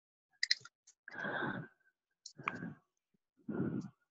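Quiet, scattered clicks, with three short breathy bursts of noise about half a second each.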